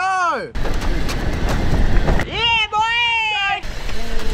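A small van rolling along the road as men push it by hand, with a steady low rumbling noise of wind and rolling. A man's voice gives a falling whoop at the very start and a long drawn-out shout in the middle.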